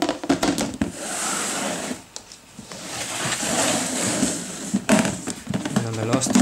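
Clear plastic hatchling tub being handled at close range: plastic scraping and rattling with sharp clicks, starting abruptly, with a short lull about two seconds in.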